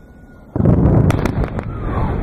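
An explosion from a strike on a mountain ridge: a sudden boom about half a second in, followed by a lingering low rumble with a few sharp cracks.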